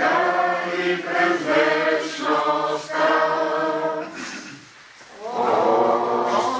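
A group of mixed voices singing a slow hymn together, in long held phrases. The singing breaks off for about a second near the four-second mark, then resumes.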